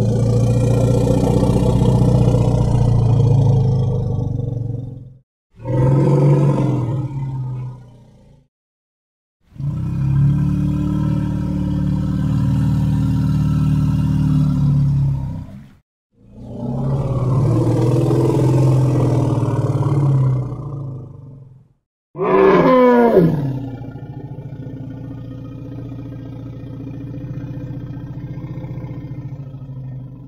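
African forest elephant calls: four long, low, rumbling calls lasting a few seconds each, separated by short silences. About 22 s in, a call swoops sharply up and down in pitch, then settles into a steadier, quieter call.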